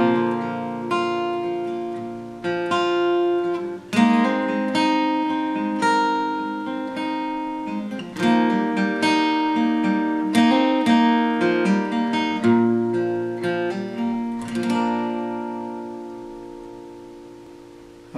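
Steel-string acoustic guitar with a capo at the third fret, played with a pick as a picked chord pattern with hammer-ons, moving through G, F and C shapes. A final chord is struck near the end and left to ring out and fade.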